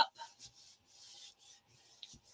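Hands smoothing a freshly folded black cardstock flap flat: faint rubbing of palms over the card in a few short strokes.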